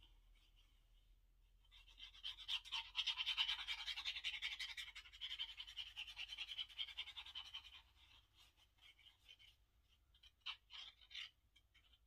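Squeezed glue bottle's nozzle drawn along card as glue is laid on, giving a rapid scratchy crackle for about six seconds, followed by a few short scratches near the end.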